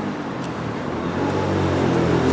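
Street traffic with a steady engine hum that grows gradually louder toward the end, as a vehicle draws closer.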